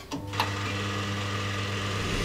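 Film projector sound effect: it starts with a couple of clicks, then runs with a steady mechanical whirr and hum.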